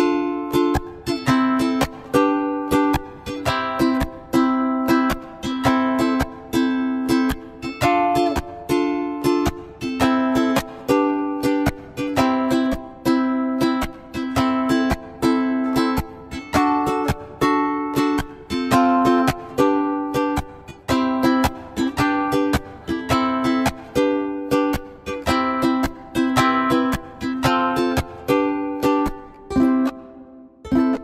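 Instrumental karaoke backing track: a plucked string instrument strumming chords in a steady, even rhythm, with no vocals.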